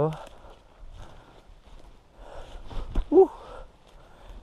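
Footsteps of a person walking through forest-floor litter and brush, with soft noisy steps through the middle and one sharp knock just before the end, followed by a short exclaimed "woo".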